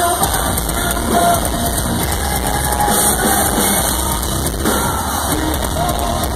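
Loud live music from a metalcore band playing on stage, heard from the audience.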